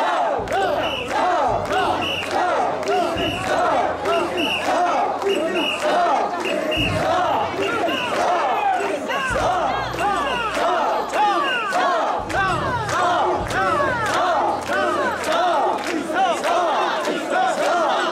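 Mikoshi bearers shouting their carrying chant together as they shoulder the portable shrine, many voices overlapping in loud, swooping calls.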